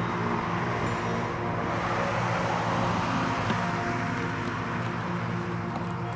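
An Audi A4 sedan driving past at highway speed: a rush of tyre and road noise that swells about a second in and fades over the next few seconds, over background music.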